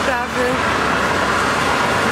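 Steady noise of road traffic passing close by, with a woman's voice briefly at the start.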